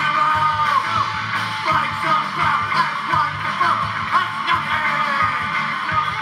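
Punk band playing live: electric guitar and drums under shouted vocals.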